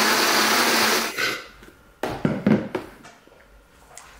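A countertop blender running at full speed, blending ice and oats into a protein shake, cuts off about a second in. A few short knocks and handling sounds follow.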